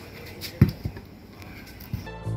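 A few knocks and clunks from a large steel mixer bowl, holding a wire whisk and cake batter, as it is handled and set down. The loudest knock comes about half a second in.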